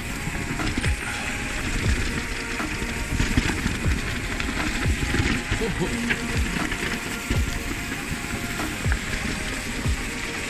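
Mountain bike descending a dirt singletrack at speed: tyres on dirt, the bike clattering over bumps, and repeated low buffeting on the helmet-camera microphone.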